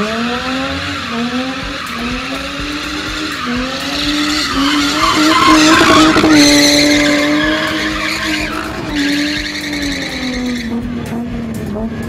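A car's engine held at high revs in a tyre-smoking slide, its pitch rising and dipping every second or so as the throttle is worked. Underneath runs a steady hiss of rear tyres spinning on tarmac, loudest about halfway through.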